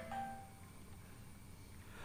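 Faint room tone with a low hum in a pause in speech, opening with a brief soft ringing tone that fades within about half a second.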